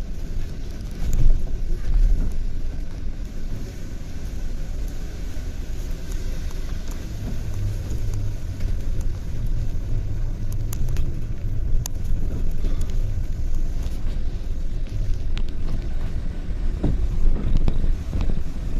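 Steady low engine and road rumble of a London double-decker bus in motion, heard from inside on the upper deck, with the engine note firming up about seven seconds in and a few light clicks and rattles.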